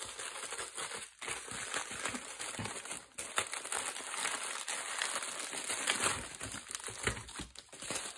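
Plastic bubble mailer crinkling as it is handled and opened, with clear plastic packets of craft supplies rustling as they are pulled out. The crinkling is irregular and continuous, with brief pauses about a second in and again about three seconds in.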